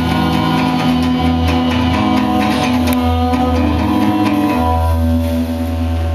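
Live band playing an instrumental passage with strummed acoustic guitar, drum kit, accordion and violin. The drumming thins out near the end while a low chord is held.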